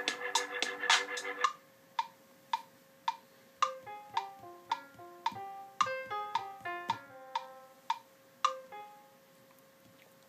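GarageBand's metronome clicking steadily, just under twice a second, with a brief stretch of previously recorded music in the first second or so. From about three and a half seconds in, the app's grand piano sound plays a short run of single notes in a Japanese scale over the clicks. The notes are played off the beat, as the player himself admits ("I'm off time").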